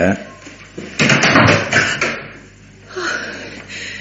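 Radio-drama sound effect of a door being opened: a noisy scrape lasting about a second, starting about a second in.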